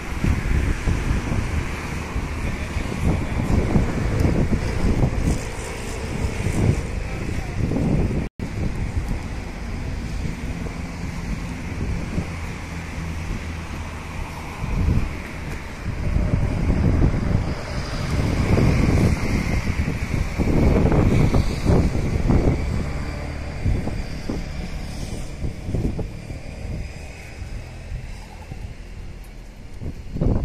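Wind buffeting the microphone in uneven low rumbling gusts over a steady outdoor hiss. The sound cuts out for an instant about eight seconds in.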